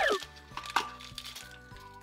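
Quiet background music with a few held notes, under faint crinkling of a blind box's plastic inner bag being handled.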